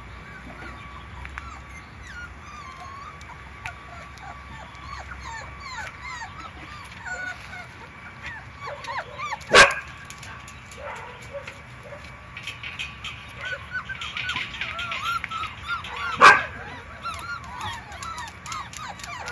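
Five-week-old puppies whimpering and yipping, many short high squeaks overlapping, with two sharp, loud sounds about ten and sixteen seconds in.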